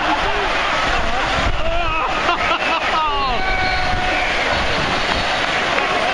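Steady noise of heavy rain and wind on the microphone, with crowd voices shouting and calling out between about one and a half and four and a half seconds in.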